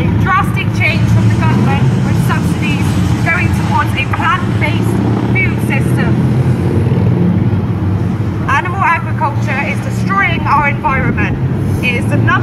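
A woman's voice amplified through a handheld megaphone, thin and hard to make out, speaking for about five seconds, pausing, then speaking again near the end, over a steady low rumble.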